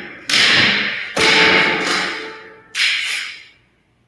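Film-trailer impact hits: three heavy booms about a second apart, each ringing out in a long fading tail, the last dying away to silence just before the end.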